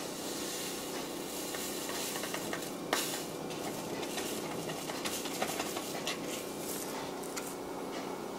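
Dry wine yeast shaken from a foil sachet into a glass jug of apple juice: faint rustling and small ticks over a steady hiss, with one sharper tick about three seconds in.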